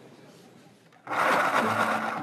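A quiet first second, then a loud, steady whirring noise starts suddenly about a second in.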